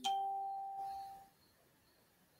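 A single chime that starts suddenly, a few pure tones sounding together and fading out over about a second.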